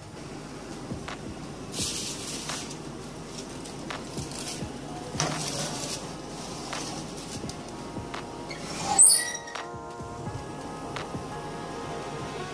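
Metal baking tray being slid onto an oven's wire rack, with a few scraping, clinking strokes over a steady hum. About nine seconds in comes one loud sharp sound, then background music.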